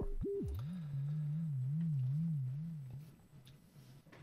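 Sine-wave test tone from an Elektron Digitakt with its pitch swept by the LFO on sample tune. For the first half second, at extreme LFO depth, the pitch leaps abruptly between very low and high: the modulation is saturated and no longer sweeps smoothly. With the depth turned down, it settles into an even vibrato of about two and a half wobbles a second, which fades out about three seconds in.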